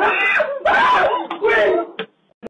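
A person's voice crying out in three drawn-out cries that waver in pitch, without clear words.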